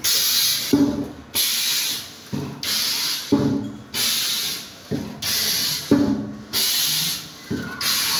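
Automatic hot foil stamping machine for ribbon running through its press cycles. Each stroke gives a short knock followed by about half a second of hissing air, repeating about every 1.3 seconds, six or seven times.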